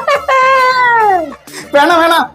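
A long, drawn-out cry, cat-like or wailing, lasting about a second and falling steadily in pitch.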